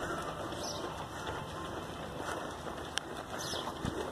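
Outdoor street ambience with a few short bird calls and a single sharp click about three seconds in.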